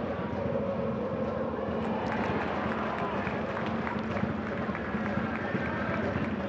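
Pitch-side sound of a football match in an almost empty stadium: players shouting and calling, with short sharp knocks of ball strikes and footfalls from about two seconds in, as a goal is scored.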